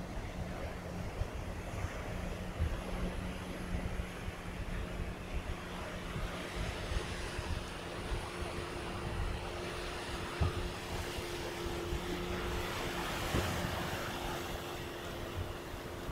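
Surf washing over shoreline rocks with wind on the microphone, under a steady engine drone that grows louder in the second half.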